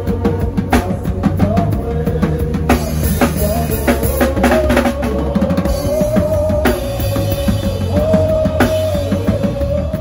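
Live gospel praise band music dominated by a drum kit played close by, with steady kick drum, snare and cymbal hits over a bass groove and a sustained melody line.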